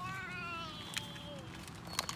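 A toddler's long, high whine, starting high and sliding slowly down in pitch over about a second and a half, with a couple of small clicks.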